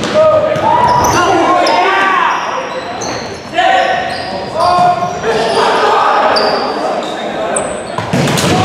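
Volleyball rally in a gymnasium hall: players and spectators shouting, sneakers squeaking on the hardwood floor in short high chirps, and the ball being struck, with a sharp hit about three and a half seconds in.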